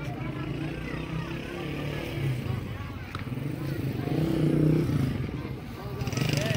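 Street ambience: people's voices and chatter over a steady low engine hum, swelling a little about four seconds in.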